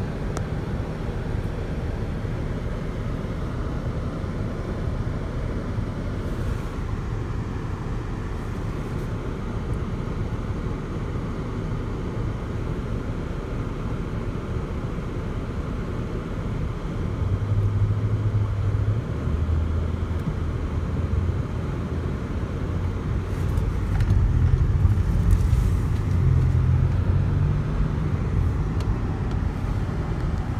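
Car engine and road noise heard from inside the cabin as the car drives. The engine gets louder and steps up in pitch a little past halfway, and again, louder still, later on.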